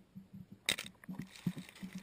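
Soft thumps of a large Florida black bear's paws on sand close to a ground-level camera, with sharp knocks against the camera, the strongest about two-thirds of a second in, as the bear runs over it.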